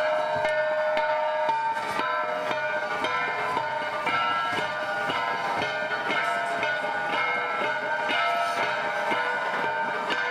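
Several handheld flat bronze gongs (Cordillera gangsa) struck in a quick, steady beat, their ringing tones overlapping into a continuous metallic chime.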